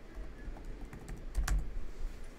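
Typing on a computer keyboard: scattered key clicks as a search word is keyed in, the loudest about one and a half seconds in.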